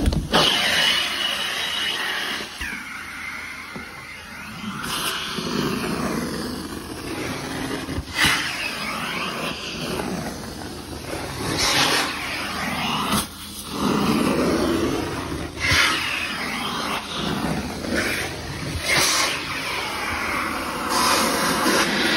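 Hot-water carpet extraction: the vacuum of a carpet cleaning machine pulls air and water through the stair tool and its hose, a continuous rushing with a wavering pitch. It surges sharply every few seconds as each stroke starts or the tool seals and lifts off the carpet.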